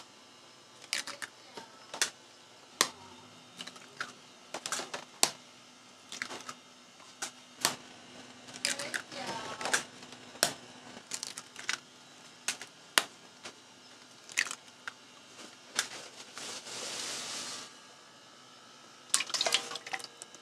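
Fresh eggs cracked one after another on the rim of a stainless steel pot, a sharp crack every second or so with the wet drip of egg dropping into the pot. Near the end comes a short hiss lasting about a second and a half.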